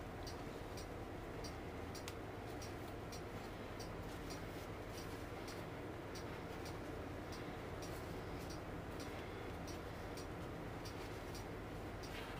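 Faint, regular ticking, about three ticks a second, over a low steady hum.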